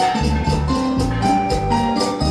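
Live Latin dance band playing: bass, a quick steady percussion beat and a melody line over it.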